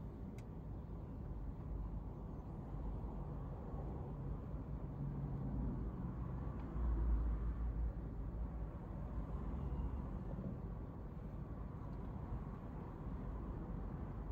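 Low, steady rumble heard from inside a car waiting in traffic, with other vehicles passing outside; the rumble swells louder about seven seconds in.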